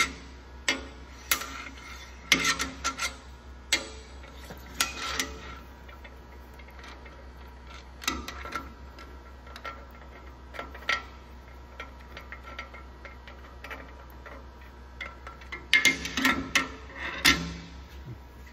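Steel cam bearing installer parts clinking and knocking against the cast-iron small-block Chevy block as they are handled in the cam tunnel, each strike ringing briefly. A cluster of clinks comes in the first few seconds and another near the end, with only a few scattered ticks between.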